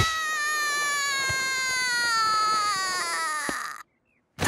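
A cartoon boy's long, drawn-out wail of pain after being knocked down in a tackle. It falls slowly in pitch and stops abruptly near the end.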